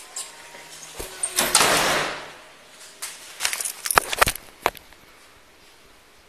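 Body-worn camera jostled as its wearer walks through a doorway: a click, then a loud rustle lasting about a second, then a quick run of sharp clicks and knocks, fading to faint room noise.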